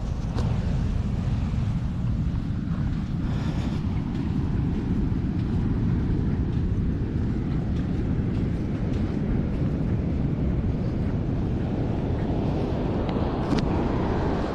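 Wind buffeting the camera microphone: a steady low rumble with no let-up. A brief sharp click comes near the end.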